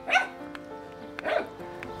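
A dog barking twice, about a second apart, over steady background music.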